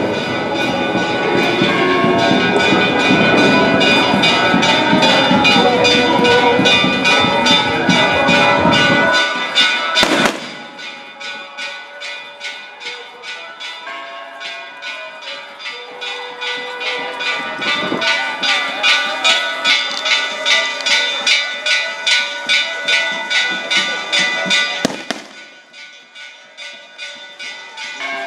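Church bells pealing in a fast, even run of repeated strikes, two or three a second. For the first nine seconds a loud, dense low din lies under them, then the sound drops away sharply. It drops again near the end.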